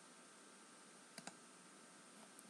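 Near silence: room tone, with two faint clicks close together a little past halfway through.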